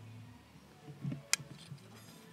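Quiet room tone with a faint low hum and one sharp click a little past the middle, followed by a couple of fainter ticks.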